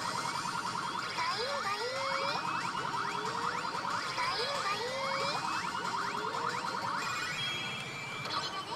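Pachislot machine playing electronic sound effects while its on-screen counter climbs: fast-ticking chime runs, rising pitch sweeps and bouncy 'boing'-like tones, repeating every second or two and stopping near the end.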